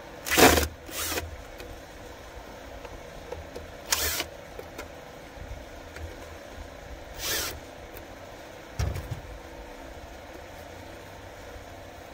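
Cordless 24-volt drill run in short bursts, about five of roughly half a second each, backing out the fasteners on an air-cooled V-twin engine to get at its carburetor.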